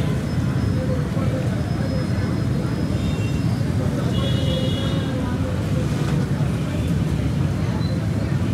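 Lentil fritters deep-frying in a large karahi of oil over a gas burner, a steady low roar throughout. A big perforated metal skimmer stirs the fritters and scrapes against the wok.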